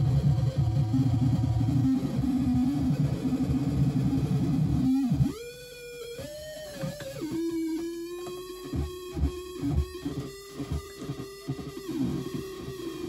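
Modular synthesizer patch run through a Big Muff fuzz pedal, making a noise piece. A dense, low, fuzzy drone cuts off suddenly about five seconds in. A thinner pitched tone follows, bends up and down, then holds steady while irregular stuttering clicks and dropouts break it up.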